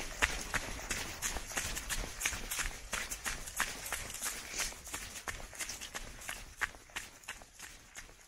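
Running footsteps on a leaf-covered dirt forest trail, about three strides a second, fading out toward the end.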